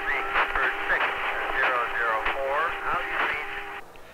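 Two-way radio voice transmission between a ground control station and an airliner in flight, sent over a satellite link. It sounds thin and band-limited, with a steady tone underneath, and the talk stops shortly before the end.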